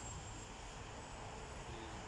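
Quiet, steady outdoor street ambience: a low rumble and an even hiss of background noise, with no distinct event standing out.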